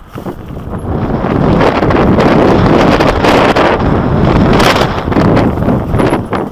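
Wind rushing over the microphone of a camera on a mountain bike, mixed with the tyres and bike rattling over a stony singletrack. It builds about a second in and stays loud through the middle.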